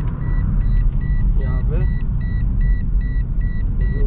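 Steady low road and engine rumble heard from inside a moving car, with a high electronic beep repeating rapidly and evenly throughout.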